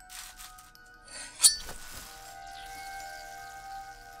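A single sharp, ringing clink about one and a half seconds in, followed by sustained background music tones.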